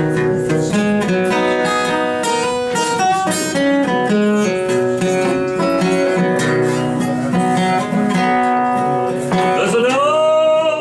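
Solo acoustic guitar playing the instrumental introduction to a country song, picked single notes mixed with chords. A man's singing voice comes in right at the end.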